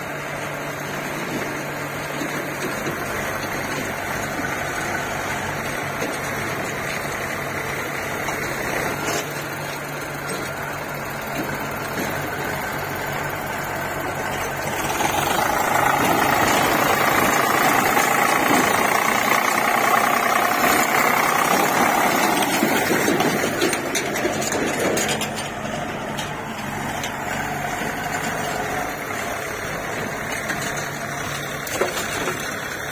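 Diesel engines of farm tractors and a JCB 3DX backhoe loader running steadily. The sound grows louder a little past the middle for about ten seconds, then settles back.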